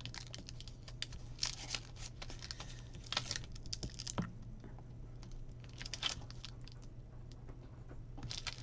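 Sheet of clear stamps on its plastic backing being handled over a paper planner page: light plastic crinkles and small clicks, with louder rustles about a second and a half, three seconds and six seconds in. A low steady hum runs underneath.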